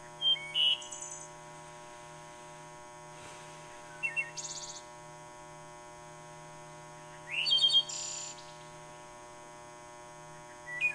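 Small birds chirping in three short bursts of calls, a few seconds apart, over a steady electrical hum.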